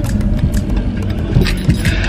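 Car interior noise while driving: a steady low rumble of engine and road, with a few light clicks and rattles.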